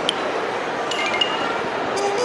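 Reverberant shopping-mall hubbub as a steady wash of background noise, with a couple of light clicks at the start and a few brief, clinking chime-like tones about a second in.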